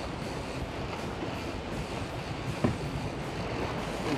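Steady rumble of the sportfishing boat's engine running, mixed with wind and sea noise, with a single short knock about two-thirds of the way through.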